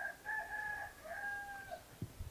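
A rooster crowing once in the background: one drawn-out call in two parts, with a brief break about a second in.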